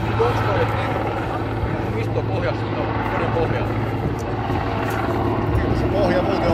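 Border Guard helicopter flying with a van hung beneath it as an underslung load, its rotors and engines making a steady low drone. Spectators' voices murmur in the background.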